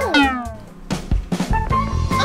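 A cat meows once near the start, its pitch falling, over light background music.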